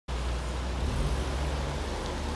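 A car driving past across a wet car park: low engine rumble with a steady hiss of tyres on wet tarmac.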